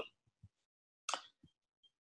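Near silence, broken by one brief soft click about a second in.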